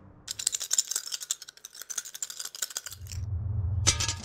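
Plastic two-colour counters rattling as they are shaken: a rapid run of clicks lasting about two and a half seconds. It is followed by a low hum and a single sharp click near the end.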